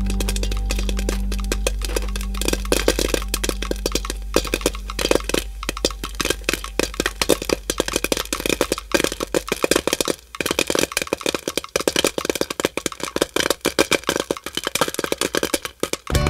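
Popcorn popping: a rapid, irregular run of sharp cracks that grows dense about two seconds in, over a low held note that fades out about ten seconds in.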